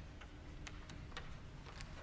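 Faint low background noise with about half a dozen small, irregular clicks scattered through it.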